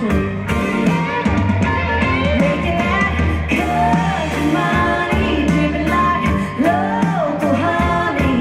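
Live country-rock band playing with a woman singing lead into a microphone, electric guitars and a heavy bass line under the vocal.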